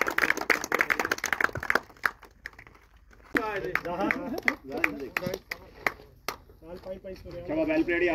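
Men talking in a small gathering, with a quick run of hand claps in the first two seconds.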